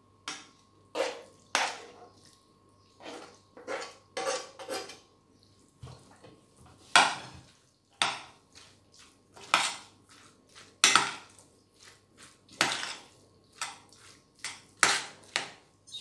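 Metal spoon clinking, knocking and scraping against a metal pan and a steel mixing bowl as a spiced onion and tomato-paste mixture is spooned onto chopped potatoes and stirred in. The knocks come irregularly, one after another.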